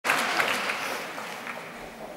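Audience applause in a concert hall, dying away.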